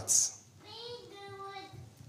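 A young child's voice, faint, holding one steady, high-pitched note for about a second. It comes just after the tail of the preacher's last word.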